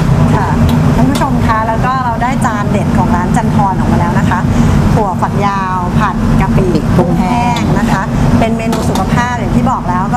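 Voices talking over a steady low machine rumble in a commercial kitchen.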